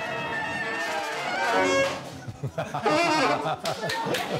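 A school wind band of saxophones and trumpets playing together in sustained held notes, getting louder about one and a half seconds in, easing off briefly, then playing on.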